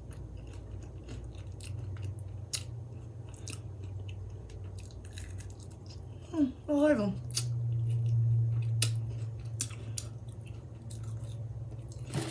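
Close-up eating sounds: a mouthful of crispy fried food being chewed, with many short, sharp, wet mouth clicks and crunches. A brief voiced "mm" comes about six and a half seconds in, over a steady low hum.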